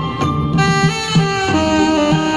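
Tenor saxophone playing a melody live, held notes changing every half second or so, over a backing accompaniment with a steady low pulsing beat.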